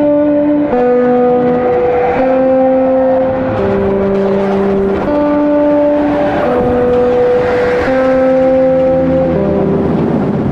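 Background music: slow held chords that change about every second or so.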